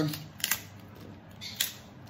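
Outer leaves being snapped off a baby artichoke by hand: a few short, crisp snaps, two close together about half a second in and another just past a second and a half.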